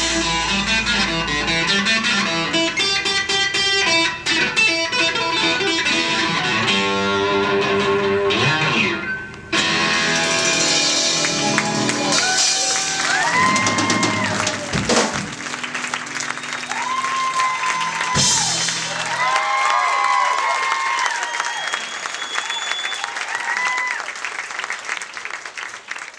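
A live band with electric bass and drums plays the end of a song while a woman sings long, high held notes over it. The bass and drums stop about two-thirds of the way through, her last notes ring out, and applause follows and fades near the end.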